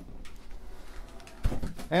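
Quiet handling noise as a cardboard monitor box is passed from hand to hand, with a soft thump about one and a half seconds in.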